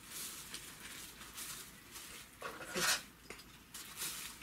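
Clear plastic gift bag crinkling and rustling as it is handled and gathered at the neck, with a louder crinkle about three seconds in.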